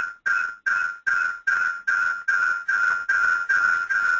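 Repeating electronic beep tone, a single steady pitch sounding about two and a half times a second, with the gaps between beeps growing shorter.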